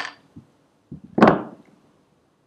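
Handling knocks: a faint click, then a short knock about a second in and a louder clunk just after it. These fit an aluminium beer bottle being lifted from a table.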